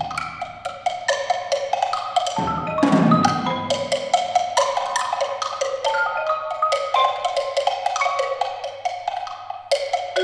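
Two players on mallet keyboard percussion play quick, interlocking runs of pitched notes in the upper register. About two and a half seconds in, a low rumble swells underneath for about a second and a half.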